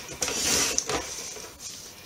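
A short rasp of a craft tool working paper, lasting under a second and ending in a sharp click, followed by quieter paper handling.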